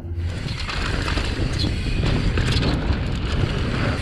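Wind buffeting the action-camera microphone while a downhill mountain bike rolls fast over a dirt trail, with frequent small clicks and rattles from the bike and the trail surface.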